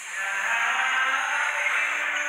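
Dance music playing for partner dancing, with held tones and little bass.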